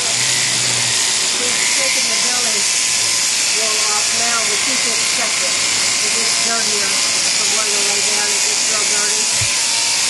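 Electric sheep-shearing handpiece running steadily, a constant high hiss with a thin steady hum under it.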